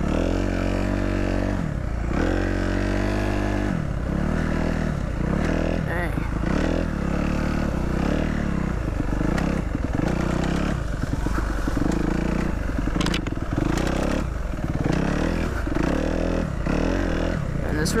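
Dirt bike engine running under way on a rough dirt trail, its revs falling and climbing every second or two as the throttle is worked.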